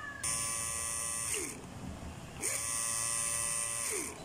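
Homemade mini drill, a small DC motor with a brass collet chuck, switched on twice: each time a high, steady whine for a little over a second, which then winds down in pitch as the power is cut.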